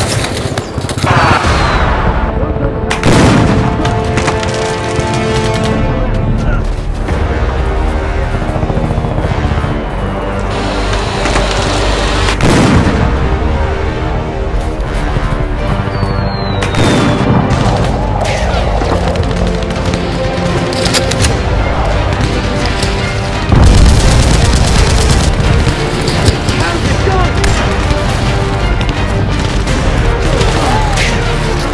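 Film soundtrack of music overlaid with gunfire and booming explosion effects: shots strike again and again over continuous music, with a louder burst of noise about three-quarters of the way through.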